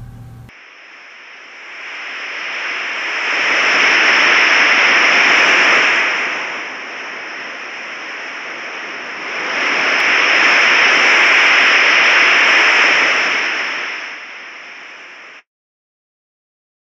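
A refrigerant leak in an HVAC condenser's refrigerant line, heard through an AccuTrak VPE ultrasonic leak detector as a rushing hiss with a thin steady high tone over it. The hiss swells loud twice, the sign of the probe closing on the leak and pinpointing it, then fades and cuts off suddenly near the end.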